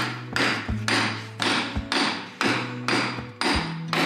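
Background music with a steady, even drum beat over a low bass line.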